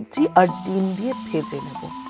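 Red onion sizzling as it hits hot oil in a stainless steel pan: a steady hiss that starts about half a second in. Background music with a singing voice plays over it.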